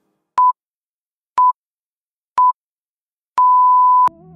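Interval timer countdown beeps: three short beeps a second apart, then a longer beep at the same pitch, marking the end of the rest period and the start of the next work interval.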